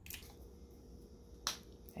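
Quiet room tone with two brief clicks, the sharper and louder one about a second and a half in.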